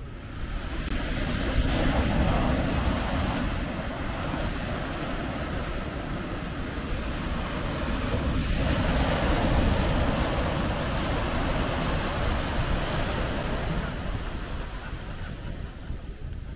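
Sea waves surging and breaking on a sandy beach and rocks, a steady rush that swells twice, with wind rumbling on the microphone.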